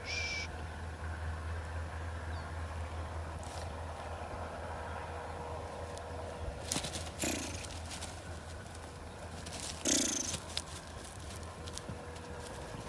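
Steady low rumble of outdoor ambience with a short hissing sound at the very start, and brief rustling noises about seven and ten seconds in, the louder one near ten seconds.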